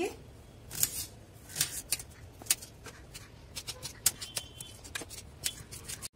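Kitchen knife cutting through raw onion on a countertop: irregular crisp cuts and taps, sparse at first and coming more quickly in the second half.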